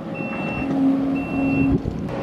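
Kubota compact track loader's backup alarm beeping twice, about a second apart, as the machine reverses, with its diesel engine running underneath.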